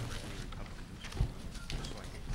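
Meeting-room bustle during a break: faint background murmur and shuffling, with one sharper knock a little past a second in.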